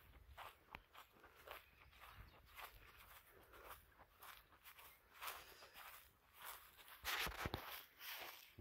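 Faint footsteps on dry, dead grass, roughly two steps a second, with a louder rustling crunch about seven seconds in.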